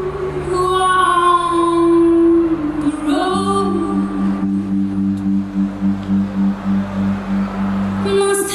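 Live band music: a female voice sings long held notes with vibrato, without clear words, over guitar. From about three seconds in, a low note pulses steadily underneath.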